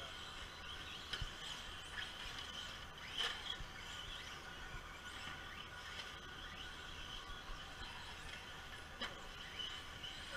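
Radio-controlled cars running on a dirt track, heard faintly: a thin motor whine that rises and falls, with a few light knocks.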